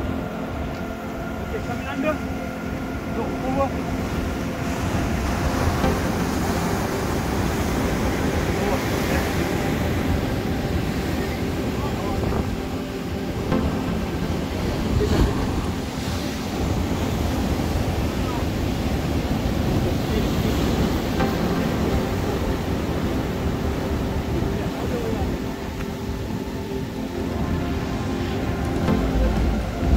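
Ocean surf washing and breaking against a pier, with wind buffeting the microphone, and faint background music with held tones underneath.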